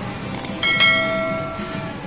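Subscribe-button animation sound effect: a short click, then a bell chime just over half a second in that rings with several steady tones and fades away over about a second.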